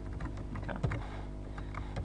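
Computer keyboard keys clicking as a few keystrokes are typed, with one louder click a little before the middle, over a steady low hum.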